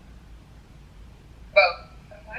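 A quiet pause with low background hiss, then a woman says one short word, "both", about one and a half seconds in, coming through a video call.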